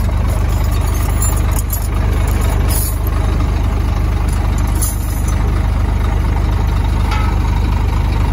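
Heavy truck's diesel engine idling steadily close by, a deep, even rumble.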